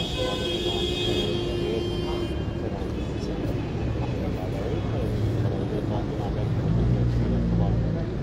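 Outdoor crowd murmur, many people talking at once, with a motor vehicle's engine running nearby, its low rumble getting stronger in the second half.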